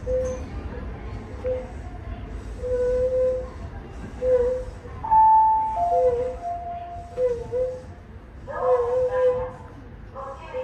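Low rumble of an electric train standing at a platform, with repeated short wavering pitched sounds. About halfway through comes a steady higher tone, then a longer lower one.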